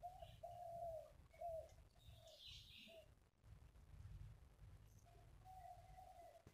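Faint cooing of a dove: a run of short, low, hooting notes, ending with a longer held note. A few higher chirps from another bird come in about two seconds in.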